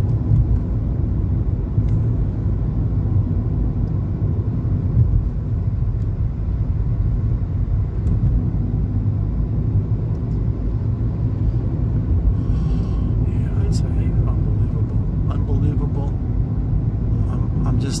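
Steady low rumble of a car's tyres and engine heard from inside the cabin while driving along a paved road.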